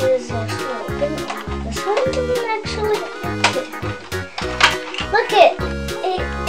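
Background music with a steady, bouncy bass beat, with a child's voice heard briefly over it.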